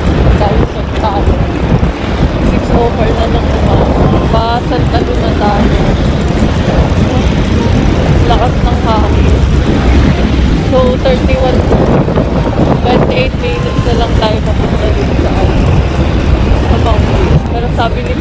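Loud, steady wind rush and road noise on a phone's microphone while riding on a motorcycle, with the vehicle's noise underneath.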